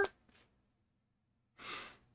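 A man's short audible breath near the end, after more than a second of near silence.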